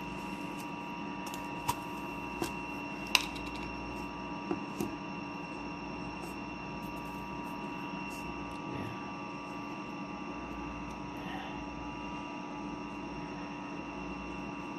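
A steady electrical or mechanical hum with a few fixed tones, like a room appliance running. A few light clicks and taps come in the first five seconds.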